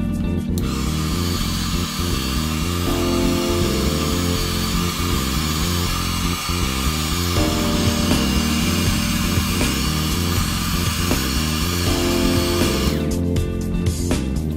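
A hand-held hot-air blower running steadily as it dries a paper collage, switched on about half a second in and off about a second before the end, heard over background music.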